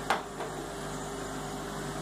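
Steady electrical hum of running lab equipment, with two brief faint sounds near the start.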